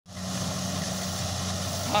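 Kubota Harvest King combine harvester running steadily while harvesting rice: a constant low engine hum.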